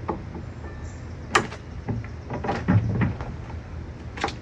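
A sharp click a little over a second in, then a few softer knocks and low thumps: tools and wood being handled at a wooden cabinet as the work of pulling brad nails gets under way.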